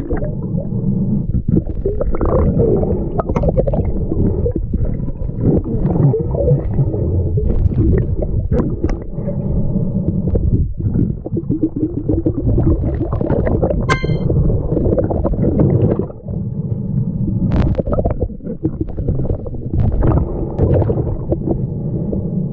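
Underwater sound picked up by a mask-mounted GoPro: a continuous muffled rumbling of water and hand movement while digging in silt and shells. A few sharp clicks come through, the clearest a ringing clink about 14 seconds in.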